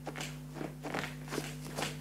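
A quiet pause between speech: a steady low hum in the room, with a few faint soft clicks.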